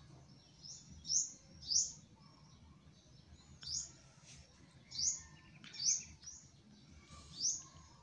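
A small bird chirping in the background: about six short, high chirps at irregular intervals.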